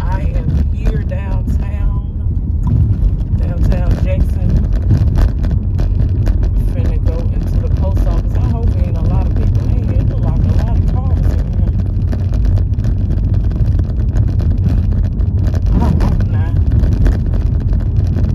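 Steady low rumble of a car being driven, heard from inside the cabin: road and engine noise. A voice comes in faintly now and then.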